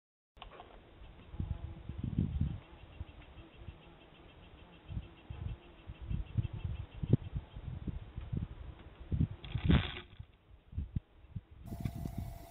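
Black bear cub moving and bumping about at close range on the deer stand where it is at the bird block, heard through a trail camera's microphone: irregular low thumps and knocks, with a brief louder rush of noise about ten seconds in.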